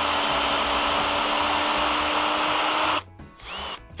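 Makita HP457D 18 V cordless drill-driver driving a screw into wood, its motor running at a steady high whine without bogging down on a fully charged battery. It stops abruptly about three seconds in.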